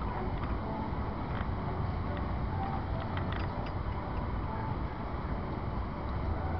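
Diesel freight locomotive running at low speed in the distance, a steady low rumble with a few faint metallic clicks and creaks from the train.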